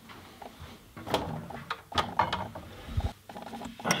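Clicks, knocks and rattles of a hotel minibar fridge being opened and its contents handled, with a low thump about three seconds in.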